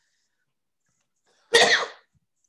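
A woman lets out one short, loud, explosive burst of breath about one and a half seconds in, like a sneeze or cough.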